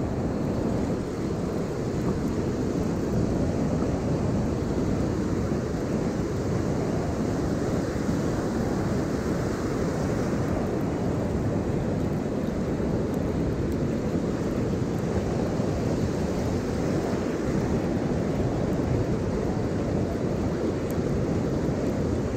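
Ocean surf washing in with wind buffeting the microphone: a steady, even rush of noise.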